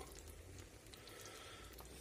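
Near silence, with the faint simmering of a vegetable and tomato sauce in a frying pan over low heat.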